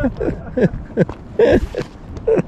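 Laughter: a run of short, falling bursts of voice, about four or five a second, with a breathier burst about one and a half seconds in.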